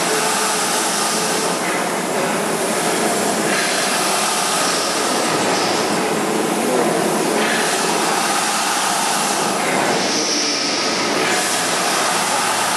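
Large horizontal stationary steam engine running, giving a steady hiss whose tone shifts every couple of seconds.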